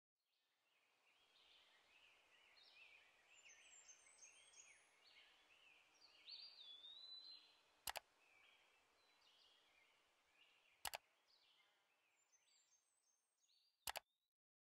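Near silence with very faint chirping of small birds, many short calls with quick pitch slides. Three sharp clicks, about three seconds apart, stand out as the loudest sounds.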